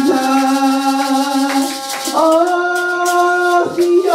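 Live worship music with maracas shaking steadily over long held notes; the held notes step up in pitch about halfway through.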